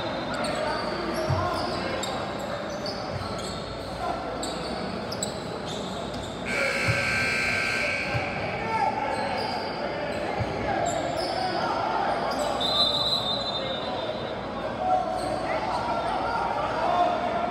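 Sounds of a basketball game in a large gym: a ball bouncing on the hardwood floor now and then, with players' shouts and chatter, all echoing in the hall.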